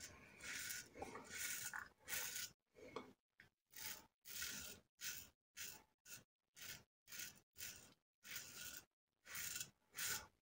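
Soluna aluminum double-edge safety razor with a Wilkinson Sword blade scraping through lathered stubble on the first pass. The strokes are faint and crackly: longer at first, then short ones in quick succession, more than one a second.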